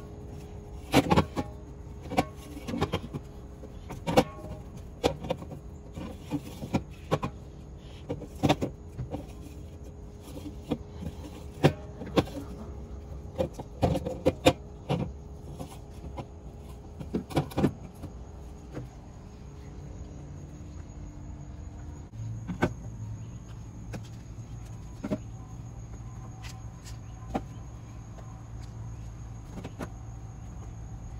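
Aluminium soda cans being set down on a glass refrigerator shelf and clinking against one another: a series of sharp clinks and taps, frequent in the first half and sparser later. A low steady hum comes in about two-thirds of the way through.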